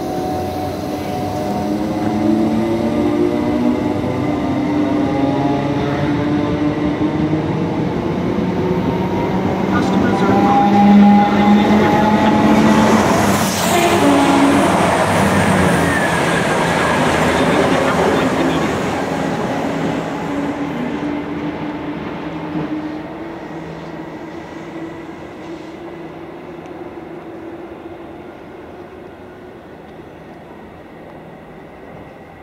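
Trains running through the station: a Thameslink Class 319 electric unit with whining motor tones, and a Class 222 Meridian diesel unit on the fast lines. The noise builds to its loudest about halfway, with a surge as a train passes close, then fades away.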